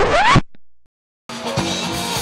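A short sound effect of quickly rising pitch, like a scratch, cuts off under half a second in. After a brief silence, music with drums starts about a second and a half in.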